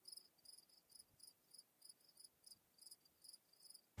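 Near silence with faint, high cricket chirping, a short chirp repeating about three times a second.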